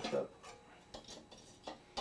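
A few light metal clicks and taps as a pickle fork pries a VW Type 1 air-cooled cylinder head loose from its cylinder barrels.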